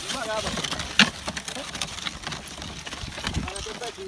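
Small wooden cart drawn by two yoked rams moving along a dirt road: scattered knocks and clicks from the cart and hooves, with one sharp click about a second in.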